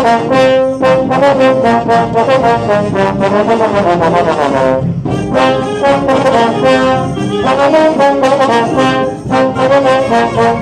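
High school trombone section playing a loud, brassy band lick. The lick is played twice, with a short break about five seconds in, and the second time is played harder.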